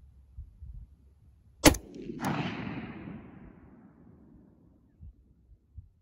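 A single shot from a scoped AR-15 rifle in .223/5.56 about a second and a half in, followed about half a second later by a second crack and a rumble that fades away over about two seconds.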